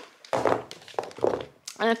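Heeled sandals being handled and set down on a wooden floor: a few dull knocks with some rustling.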